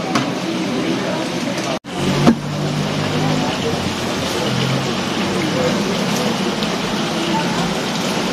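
Frog legs frying in a wok over a gas burner: a steady sizzling hiss. The sound drops out for a moment just under two seconds in.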